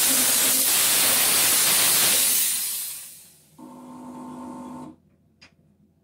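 Steam cleaner jetting steam in a loud, steady hiss that fades out about three seconds in. A steady electric buzz follows for about a second and cuts off, then a single click near the end.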